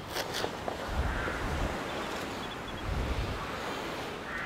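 Steady hiss of falling rain, with low gusts of wind buffeting the microphone at the start, about a second in and again near three seconds.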